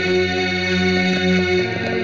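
Dramatic film background score: sustained chords on an effects-laden, distorted electric guitar over a low held tone, with the notes shifting about three quarters of the way through.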